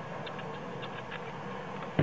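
Faint, scattered clicks of a mobile phone's control keys being pressed and the handset being handled, over a steady low background hum, with one louder knock at the very end as the phone is turned in the hand.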